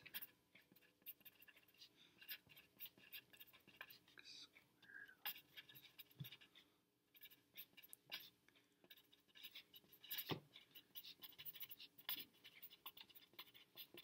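Pencil writing on lined paper: faint, quick scratching strokes of the lead, with a short pause a little after halfway.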